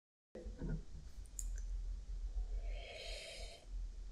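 Quiet room sound with a low rumble and a few small clicks, then a short noisy sip from a mug about three seconds in.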